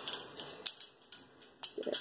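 A few sharp metallic clicks and light rattles as the door of a white wire bird cage is unlatched and opened by hand.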